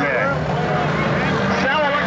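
Several Mod Lite dirt-track modified race cars' engines running at low speed under caution, a steady drone as the field circles slowly ahead of a restart.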